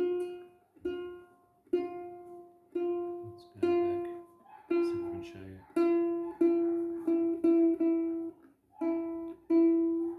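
The G string of a freshly strung sapele-bodied kit ukulele is plucked again and again, each note left to ring before the next. The plucks come closer together in the second half. The tuning peg is being turned to bring the new string up to pitch while it is still stretching.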